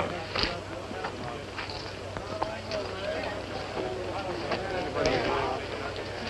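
Low background murmur of many men's voices talking at once, with a few light knocks.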